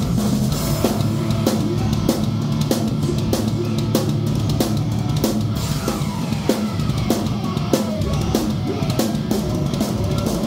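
Heavy rock band playing loud in a rehearsal room: a drum kit keeping a steady beat with bass drum and cymbals, over electric guitar through a Mesa/Boogie Rectifier Solo Head valve amp.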